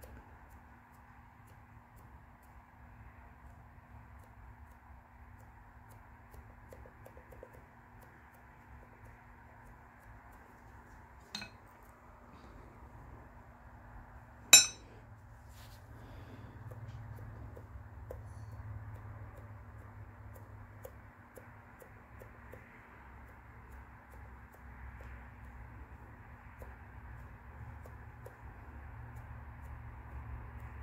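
Quiet room tone with a steady low hum, broken by two sharp clinks of a small hard object about three seconds apart near the middle, the second one louder.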